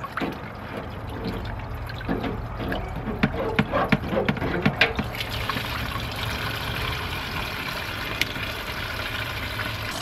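E85 fuel pouring from a Mazda RX-7's disconnected fuel lines into a plastic bucket, splashing as it fills, with a few sharp clicks in the first half. About five seconds in the flow thickens and steadies as a second stream joins.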